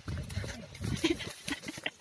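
A water buffalo's low call, heard mostly in the first half-second, among people's voices.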